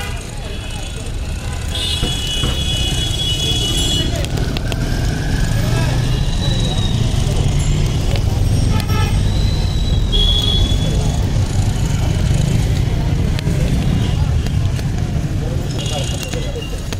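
Roadside traffic noise: a steady low rumble of passing vehicles, with horn toots about two seconds in and again about ten seconds in, and voices in the background.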